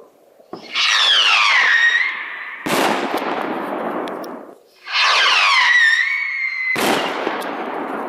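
Two 14 mm whistling skyrockets (perchlorate and sodium salicylate motors) launched one after the other, each motor giving a loud whistle that falls in pitch as it climbs. Each is followed about two seconds later by the sharp bang of its 1.75-inch titanium nesting shell bursting, fading out over a second or two.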